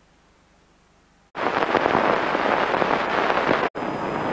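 Loud crackle and hiss of an old 1960s film soundtrack, cutting in abruptly about a second in, with a brief drop-out near the end.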